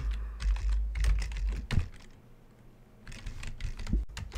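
Typing on a computer keyboard: a quick run of key clicks, a lull about halfway through, then a few more keystrokes near the end.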